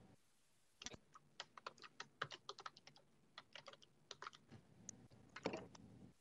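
Faint typing on a computer keyboard: a run of quick, irregular key clicks starting about a second in, with a louder cluster of clicks near the end.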